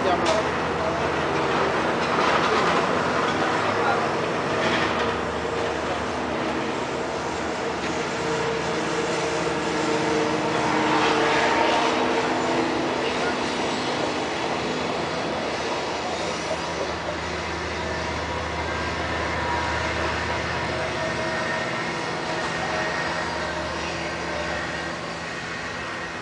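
A steady mechanical drone with several steady tones, a little louder around the middle, with voices in the background.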